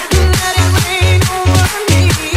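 Polish club dance music (vixa) with a steady bass beat about four times a second under a wavering melody line.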